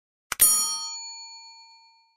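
A short click, then a bright bell-like ding that rings and fades away over about a second and a half: the sound effect of a subscribe-button animation.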